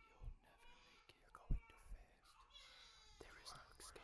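Faint whispering, with a few short dull thumps, the loudest about a second and a half in.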